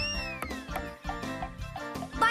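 Light cartoon background music, with a whistle-like sound effect that rises and then falls in pitch over the first half-second or so.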